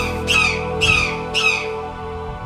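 A bird giving four harsh squawks in quick succession, each falling in pitch, over soft background music.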